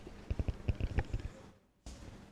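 Handling noise on a microphone: a quick, irregular run of low thumps and clicks, cutting out to silence for a moment near the end.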